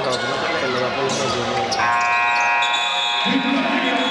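Basketball arena buzzer sounding one steady tone for about two seconds, starting a little before halfway in. Under it are crowd noise and the ball bouncing on the hardwood court.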